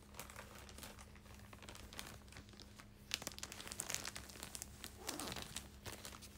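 Faint rustling and crinkling handling noise with scattered small clicks, over a steady low hum.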